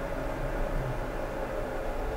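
Steady low hum and hiss of background room noise picked up by the microphone between spoken words.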